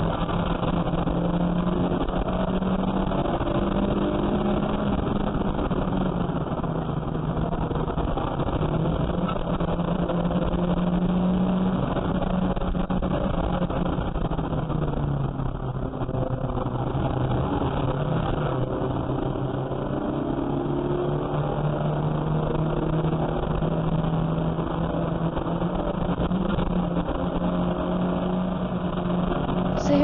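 Saloon race car's engine heard from inside the cabin under hard driving on a race lap, its note rising and falling with the throttle through the corners.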